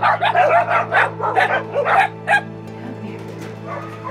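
Caged puppies barking and yipping in quick short calls, thick through the first two and a half seconds and thinning out after, over steady background music.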